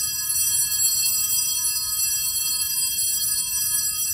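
Altar bells ringing with a steady, bright, high shimmer of many tones at once, rung at the elevation of the chalice after the consecration.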